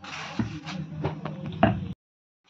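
Slotted spatula pressing and knocking against a paratha on a hot iron tawa, a few scraping knocks with the loudest near the end, over a steady low hum. The sound cuts off suddenly just before the end.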